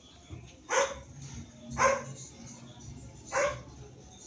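A dog barking three times, about a second to a second and a half apart.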